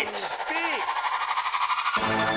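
Rapid machine-gun fire sound effect, an even rattle of about ten shots a second, over a tone that slowly rises in pitch.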